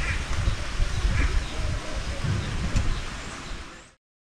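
Birds giving short calls about once a second over a loud, uneven low rumble. All sound cuts off abruptly just before the end.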